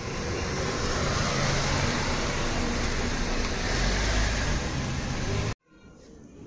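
Steady motor vehicle engine and road noise, a low hum under a hiss, which cuts off suddenly near the end.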